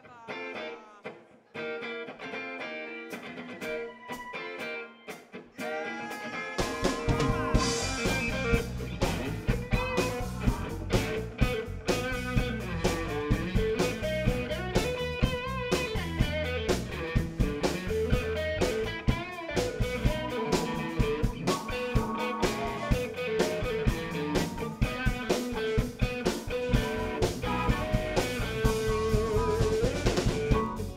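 Live electric blues band starting an instrumental intro. A guitar plays sparsely at first, then drums and bass come in with the full band about six and a half seconds in, playing a steady beat.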